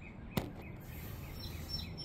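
Faint outdoor background with one sharp click about half a second in and a few faint bird chirps near the end.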